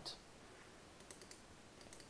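Near silence: room tone, with a few faint computer mouse clicks about a second in and near the end.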